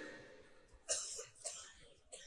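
A person coughing: a short cough about a second in and a smaller one about half a second later, both fairly quiet.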